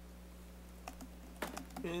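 Steady low electrical hum with a few faint clicks in the middle, like keys or small objects being tapped. A man's voice begins near the end.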